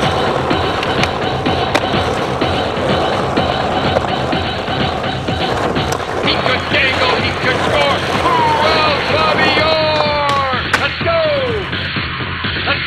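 Skateboard wheels rolling on asphalt, with sharp clacks of the board, under a music track. In the second half come a few falling pitched slides.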